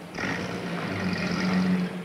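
A car engine running steadily, with road and traffic noise over a low hum, starting just after a second in… correction: starting right at the beginning and falling away near the end.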